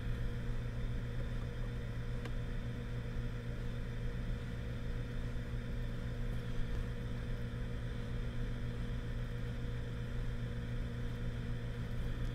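A steady, unchanging low hum with a faint higher tone above it, like a running machine or an electrical hum.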